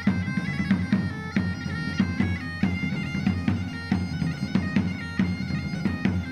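Folk bagpipe (gaita) playing a dance tune over a steady drone, with percussion marking the beat at about two strokes a second.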